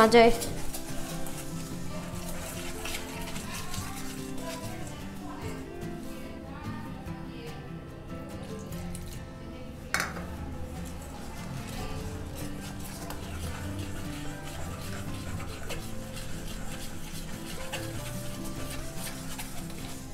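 Wire whisk stirring batter in a stainless steel bowl, the wires scraping and tapping against the metal, under soft background music. A single sharp click about halfway through.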